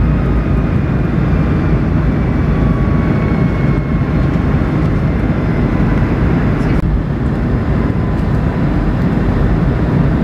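Steady in-flight cabin noise of a Boeing 757 with Rolls-Royce RB211 turbofans: a loud, even rumble of engine and airflow, with a faint high whine drifting slightly lower in pitch.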